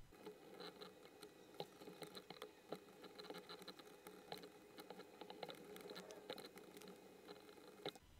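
Near silence: faint room tone with scattered soft clicks and ticks, typical of a computer mouse being clicked and its scroll wheel turned while painting and zooming.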